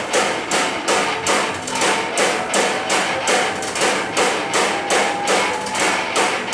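Hard rock band playing live through a PA. The drums hit on a steady, even pulse of about three strikes a second, cymbals included, over sustained bass and guitar, like a heavy breakdown section.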